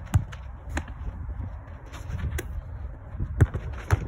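A football struck and caught in a goalkeeper drill: several sharp thuds of ball on boot and gloves, the loudest near the end as the keeper dives to save, with the thump of his landing on the artificial turf. A steady low rumble of strong wind buffets the microphone throughout.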